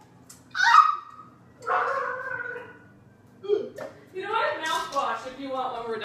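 A person's wordless groans and whimpers of disgust, several drawn-out vocal sounds one after another with the longest near the end, in reaction to a foul-flavoured jelly bean.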